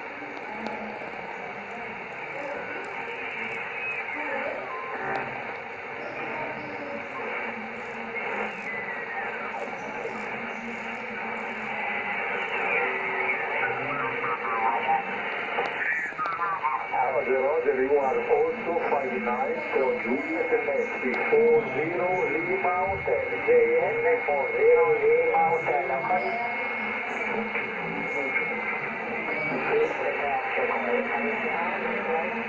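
Yaesu FT-290R II 2 m transceiver's speaker receiving the XW-2B satellite in USB: single-sideband audio with hiss and garbled, mistuned voices whose pitch slides up and down as the tuning knob is turned by hand to follow the Doppler shift. About halfway through a sweep falls in pitch, then a steady whistle holds through most of the second half.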